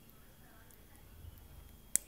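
A small plastic Lego clip piece snapping onto a Lego bar piece: one sharp click near the end.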